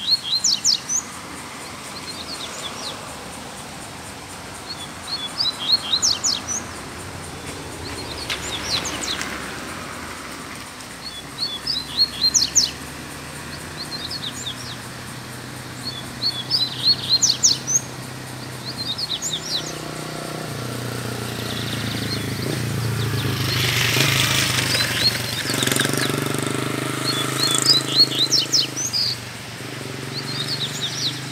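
Double-collared seedeater (coleiro) singing: short, very fast phrases of high chips and trills, repeated every two to three seconds. A low rumble swells in the second half, loudest about two thirds of the way through.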